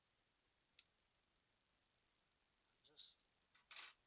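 Near silence broken by one sharp snip of scissors cutting through plant roots about a second in, then two short rustles near the end as the roots and soil are handled.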